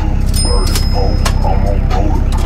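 Loud music with heavy, pulsing bass and a vocal line, played through a car audio system built up with extra door speakers and boot amplifiers.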